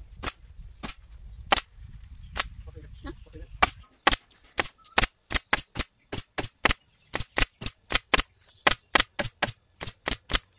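Pneumatic upholstery stapler firing staples through fabric into a wooden sofa frame, each shot a sharp crack. A few single shots about a second apart over a low rumble, then from about four seconds in a rapid run of about three shots a second.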